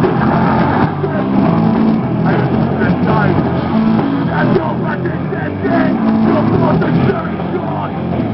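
Live punk rock band playing loud: distorted electric guitars, bass and drums with shouted vocals, heard on a camera microphone from inside the crowd in front of the stage.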